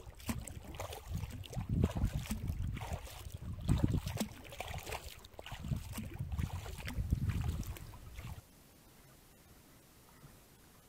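Kayak paddle strokes dipping and splashing in the water, with wind rumbling on the microphone that surges about every two seconds. About eight seconds in it cuts off suddenly to a faint steady hiss.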